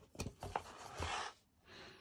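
Quiet paper rustle of a picture book being opened and its page turned and smoothed flat by hand, with a couple of soft taps in the first half-second.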